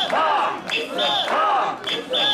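Mikoshi bearers chanting together in a steady rhythm of about one call a second as they carry the portable shrine, with a whistle blown in time, a short blast then a longer one, with each call.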